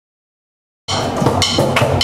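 Silence for nearly a second, then a drum kit starts playing abruptly, with several sharp hits over a steady band sound.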